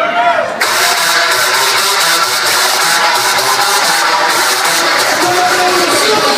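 Loud music played over a concert sound system with crowd voices. About half a second in, a loud hissing wash suddenly comes in and carries on, with a steady beat beneath it.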